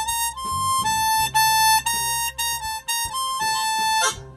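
Diatonic harmonica playing a simple single-note melody in first position from hole 4, about a dozen short notes moving among a few neighbouring pitches. The old harp's notes are no longer equally tempered and the 5 blow has probably gone flat, yet the melody doesn't sound out of tune.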